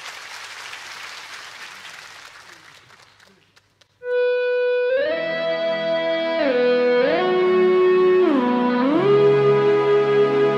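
Audience applause dying away. About four seconds in, the rock band begins a song with one held note. A second later fuller sustained chords join, their notes sliding smoothly from pitch to pitch.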